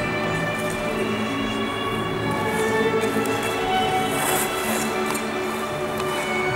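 Music for a figure skater's free-skate program, with long held notes.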